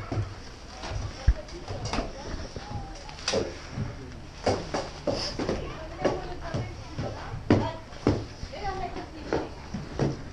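Indistinct voices, with scattered sharp knocks and clicks throughout.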